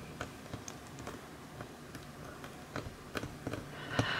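Faint, scattered clicks and taps of fingers pressing a small polymer clay cane down against a work tile.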